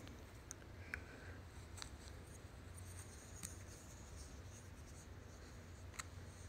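Faint scratching and rustling of a cat playing with a dangled fabric toy on carpet, with a few light ticks.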